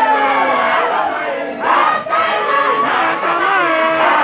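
A large group of men's voices chanting together in a Sufi daïra chant, many voices overlapping in a steady, loud call-and-answer flow. The chant breaks briefly about two seconds in, then picks up again.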